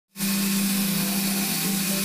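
Electric polishers running steadily on a car-paint roof box shell: a constant low motor hum with an even hiss over it.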